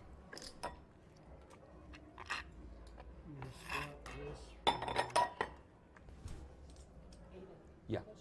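Casino chips clicking and clinking as they are handled and stacked, with scattered single clicks and a louder cluster of clinks about five seconds in.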